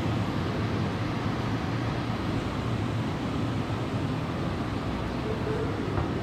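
Steady low rumble and hum of a railway platform beside a standing double-deck electric train, with no distinct events.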